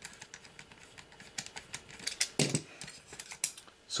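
Irregular light clicks and taps of a screwdriver working the cover screws of an aircraft angle-of-attack sensor's metal housing as the unit is handled, with a louder knock a little past halfway.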